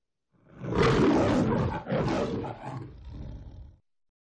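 A lion's roar in two long surges, the second weaker and trailing off, stopping just before the end.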